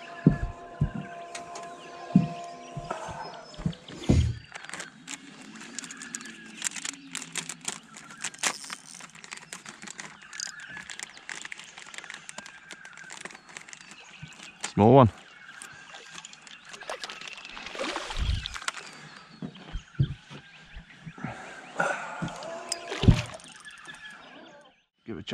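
Minn Kota electric trolling motor running with a steady whine for about three seconds, then stopping. After it come scattered clicks and knocks.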